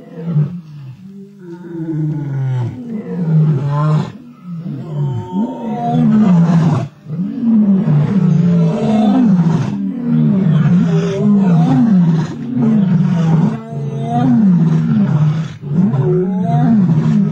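Lions growling over a kill, a continuous run of deep growls rising and falling about once a second, quieter for the first couple of seconds and then loud throughout. The growling is the sound of lions contesting and guarding the carcass as they feed.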